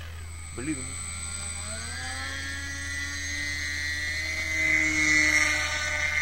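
A foam RC model seaplane's motor and propeller spooling up: a whine that rises in pitch about a second and a half in, then holds high and grows louder near the end as the model speeds across the water.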